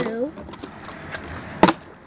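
A flipped plastic bottle lands on a wooden step with one sharp knock, the loudest sound, about one and a half seconds in. A fainter tap comes about half a second before it.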